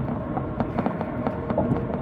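Road and engine noise inside a moving car's cabin, a steady low rumble with frequent small knocks and rattles.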